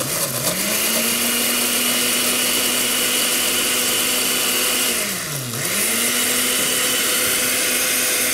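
Countertop blender running at high speed, blending a chocolate frappé of milk, cocoa and ice. The motor spins up at the start, slows and speeds back up about five seconds in, then runs steadily again.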